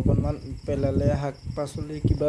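A steady, high-pitched insect trill, with a person talking over it in the foreground.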